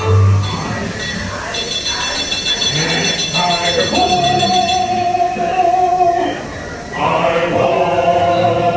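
Ride soundtrack of the dwarfs' mining song: a male-voice chorus singing to music. High chiming tones ring for a couple of seconds about a second and a half in, and a long sung note is held in the middle.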